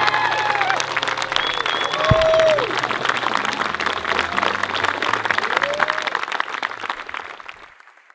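Crowd of guests clapping and cheering, with a few whoops and shouted calls over the applause, fading out near the end.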